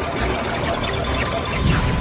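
Animated-film action soundtrack: a dense mix of rumbling battle effects under the film score.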